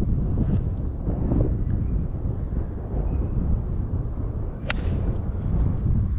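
Wind buffeting the microphone throughout, with a single sharp click of a golf club striking the ball near the end.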